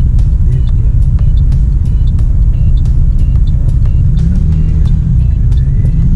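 Steady low rumble of a car cabin in traffic, heard from inside the taxi, with faint music with a regular beat over it.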